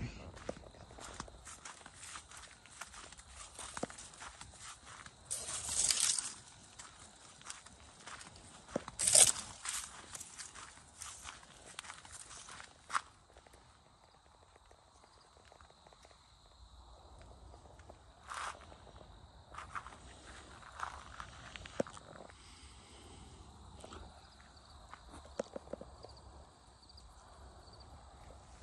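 Dry corn stalks and leaves rustling and crackling in irregular short bursts, with scattered footsteps. A faint steady high tone runs underneath.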